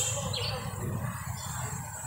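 Low, steady outdoor background noise during a pause in conversation, with one short high-pitched chirp about a third of a second in.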